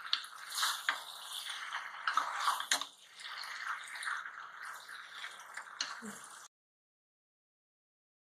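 Wooden spatula stirring and tossing macaroni and vegetables in a frying pan: a wet, scraping stir with a few sharp clicks. The sound cuts off abruptly about six and a half seconds in.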